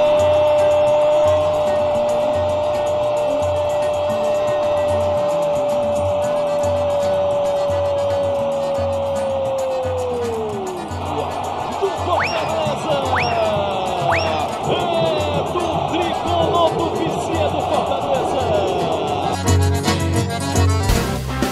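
A Brazilian TV football commentator's drawn-out goal shout, one long "Goooool" held on a single pitch for about ten seconds and then falling away. Behind it is background music with a steady beat. A few short rising-and-falling cries follow, and near the end comes a swoosh.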